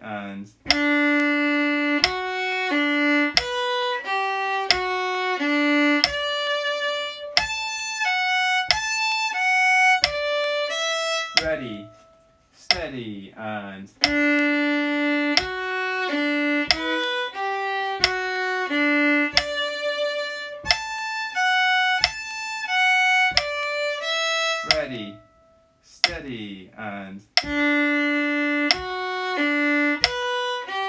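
Solo fiddle playing a phrase of the tune slowly, note by note at a practice tempo, twice through. There is a short break between the passes, about halfway through.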